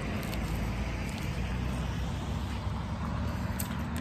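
Steady low rumble and hiss of street background noise, mainly road traffic.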